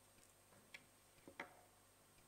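Near silence: quiet room tone with a few faint clicks, one a little before halfway and two close together past the middle.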